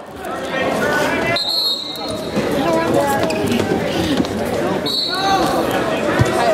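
Several voices of spectators and coaches calling out and talking over one another, echoing in a gymnasium, with two short high-pitched tones, one about a second and a half in and one near the end.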